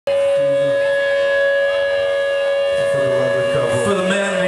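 A long, steady held note with overtones from a rock band's amplified gear, unchanging in pitch, with a couple of short low notes under it near the start. Voices start to come in near the end.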